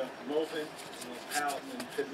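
Quiet, mumbled speech over the soft rustle of trading cards being flipped through by hand.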